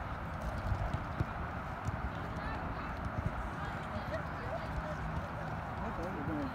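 Open-field ambience: low, irregular wind buffeting on the phone microphone, with faint distant voices of players across the pitch.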